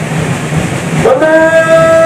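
Outdoor background noise, then about a second in a long blown horn note sets in, loud and steady in pitch.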